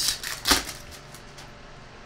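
Foil trading-card pack wrapper being crinkled and peeled open, with cards being handled: a few sharp crackles in the first half second, then only a faint rustle.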